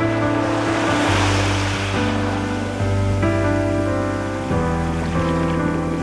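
Soft background music with sustained chords, over the wash of a wave breaking on a sandy shore that swells and fades within the first couple of seconds.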